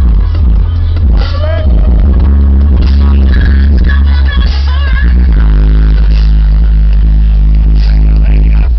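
Music played very loud through a car audio system's four 15-inch FI BTL subwoofers, powered by Sundown SAZ-3500D amplifiers. The deep sub-bass is by far the loudest part, with a singing voice riding over it.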